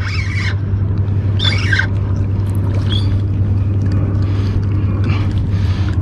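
A steady low motor drone, like an engine running, with short voice-like sounds near the start and about a second and a half in.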